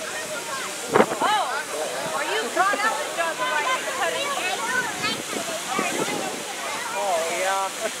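Several people talking and chattering, not clearly, over a steady hiss.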